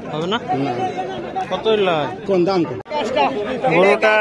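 Men talking, with several voices overlapping in busy chatter.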